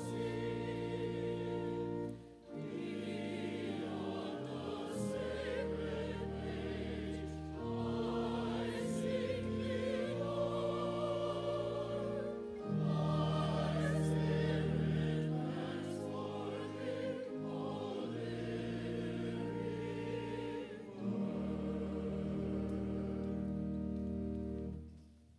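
Church choir singing with organ accompaniment: sustained organ chords beneath the voices. The music breaks briefly between phrases about two seconds in and again a few seconds before the end, and the final chord is released right at the close.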